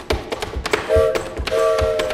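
Manual typewriter keys struck in quick rhythmic clicks as a percussion part. A violin, cello and double bass hold a sustained chord under the clicks, starting about a second in.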